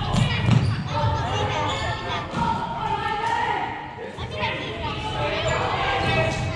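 Thuds and knocks of an indoor team game echoing in a large hall, the heaviest in the first second, with players' shouts and calls throughout.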